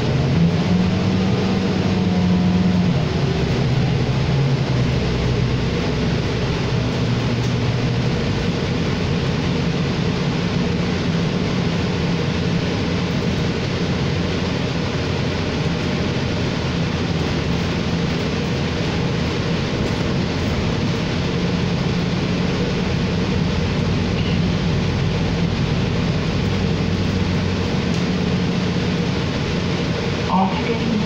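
Inside a New Flyer XD40 diesel city bus on the move: a steady engine drone with road and tyre noise. The engine note rises over the first few seconds as the bus picks up speed, then settles into an even cruise.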